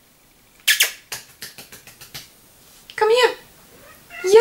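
A house cat meowing once near the end, after a run of short clicks and taps starting about a second in. She is crying for her owner, who is out of her sight.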